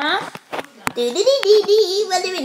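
A voice laughing, starting about a second in after a brief pause, following the last word of speech.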